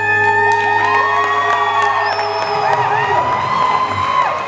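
The closing held chord of a live gospel song, ending about three seconds in, with the audience cheering and whooping over it.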